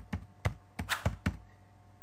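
Computer keyboard typing: about half a dozen quick, irregular keystrokes.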